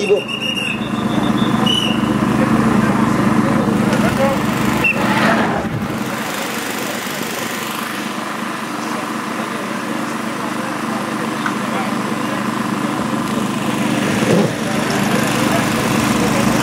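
A car engine running with a steady hum as a race support car moves past, with people talking in the background.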